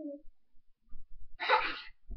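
Children's pillow fight: a brief voiced sound from a child at the start, then a loud breathy burst about a second and a half in, over soft low thumps.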